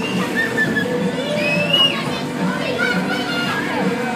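Loud fairground ride music with a regular beat, with many overlapping voices of riders and children shouting over it.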